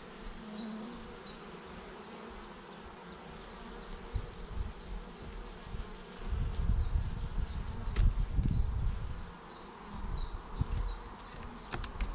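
Honeybees buzzing steadily from an open hive full of frames. Low rumbling bursts in the second half come from the hive's wooden frames being handled and pushed together.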